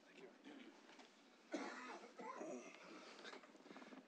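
Faint speech away from the microphone, with brief words about a second and a half in; otherwise a quiet room.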